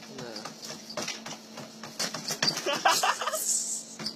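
Home treadmill running with a low steady hum and a rapid clatter of knocks as feet stumble on the moving belt. An excited human voice joins in and is loudest in the second half.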